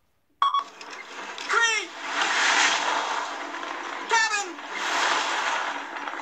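Soundtrack of an animated film's outtakes starting after a brief silence: a high, sliding cartoon voice twice, with a hissing rush of noise around and between.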